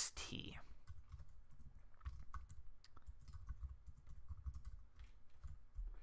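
Typing on a computer keyboard: a faint, continuous run of quick, irregular key clicks.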